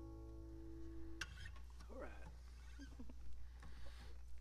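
The final chord of a song on an acoustic guitar rings on, then is cut off about a second in. Faint voices and small sounds follow.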